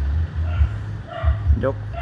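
Subwoofer playing music through a car-audio preamp as its sub level is turned up, deep bass notes pulsing below the faint rest of the music.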